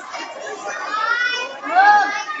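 Children's voices shouting and calling out together, high-pitched, with the loudest, a drawn-out shout, near the end.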